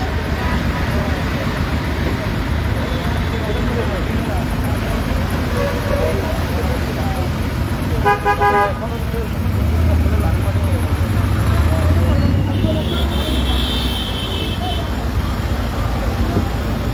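Road traffic in a jam: vehicle engines running with a steady low rumble, a vehicle horn honking once briefly about eight seconds in, and a higher steady tone for a couple of seconds near the end.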